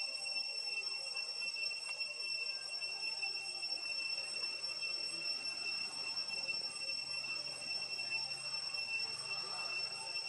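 A steady high-pitched whine made of two held tones, one an octave above the other, that does not change at all, over a faint hiss.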